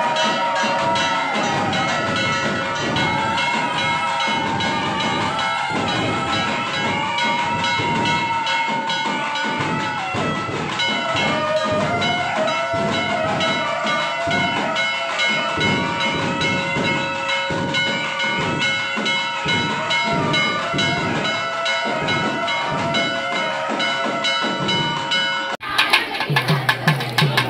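Temple ritual music during a lamp offering: bells ringing steadily under a wavering melody and fast rhythmic beats. It breaks off suddenly near the end.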